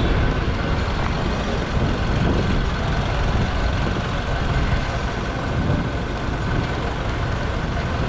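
Steady rumble of motor vehicles and road traffic, with a faint steady high whine running through it.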